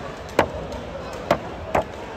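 A basketball bounced on the hardwood court: four sharp thumps, irregularly about half a second to a second apart.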